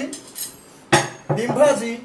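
A sharp clink of a utensil against a dish about a second in, with a lighter knock before it and a brief snatch of voice after it.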